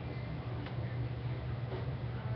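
Faint light ticks of a fingertip tapping the glass touchscreen of a Samsung Galaxy Tab 7.0 Plus, a few scattered taps, over a steady low hum.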